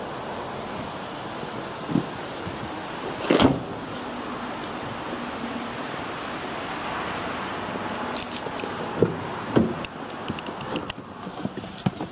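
Handling noise around a parked car over a steady hiss of room noise: a loud thump about three and a half seconds in as the boot lid is shut, then a run of clicks and knocks near the end as the driver's door is opened and someone gets in.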